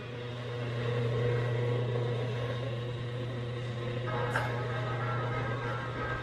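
Steady low hum of an indoor room, with faint wavering tones in the background and a small tick about four and a half seconds in.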